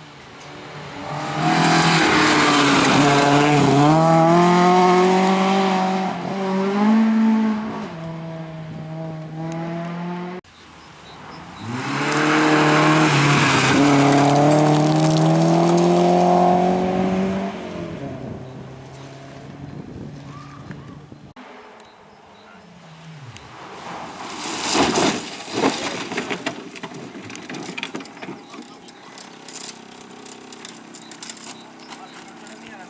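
Rally cars at full throttle on a gravel stage, in two long passes, their engines revving high with pitch steps as they shift gear, with tyres spraying gravel. In the last part a quieter engine note falls away, and then comes a spatter of sharp crackles, stones and dirt thrown up as a Peugeot 306 rally car runs onto the rough verge.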